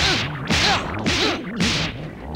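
Cartoon whip-crack and whoosh sound effects of long tree-demon branches lashing through the air: about four sharp lashes, roughly half a second apart.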